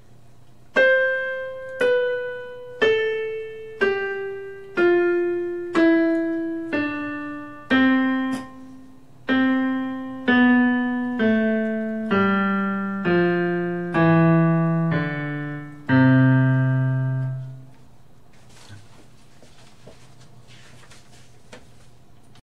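Electronic keyboard with a piano voice playing the C major scale descending twice, about one note a second: first an octave down to middle C, then on down through the octave below. The last, lowest C is held for about a second and a half.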